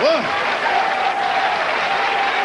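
Live comedy audience applauding and cheering: dense clapping, with laughter and whoops at the start and a held cheering voice over the clapping from about half a second in.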